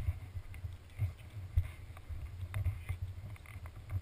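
Wind buffeting the camera's microphone in irregular gusty rumbles.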